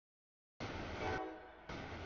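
CSX freight train at a grade crossing, its horn sounding over the rumble of the train. The sound comes in suddenly about half a second in after a silent gap.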